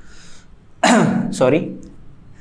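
A man clears his throat about a second in, then says a word, after a brief soft hiss.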